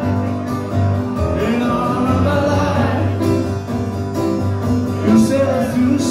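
Acoustic band music: guitars playing over a steady low note, with singing.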